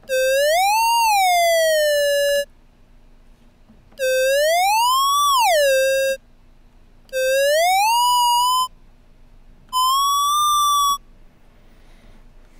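Square-wave oscillator in a Max patch played as a mouse theremin: four separate electronic tones, each sliding up in pitch and back down or holding high, with a 50 ms ramp smoothing every change. Each tone stops abruptly when the mouse button is released, which switches the amplitude to zero.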